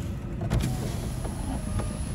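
Steady low rumble of a car driving on the road, with a single sharp click about half a second in.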